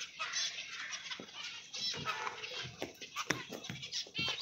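A flock of aviary finches chirping in many short, high calls, with scattered clicks and knocks.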